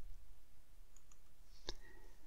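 A computer mouse button clicking once, faintly, about one and a half seconds in, with a couple of fainter ticks before it, over low room hiss.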